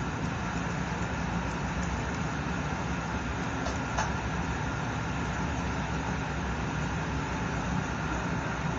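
Steady low mechanical hum, with a faint snip or two from grooming shears about four seconds in.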